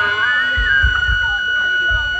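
Live band stage sound between songs: a steady high-pitched ringing tone from the amplification held throughout, with a few deep kick-drum thumps about half a second in and again near the end.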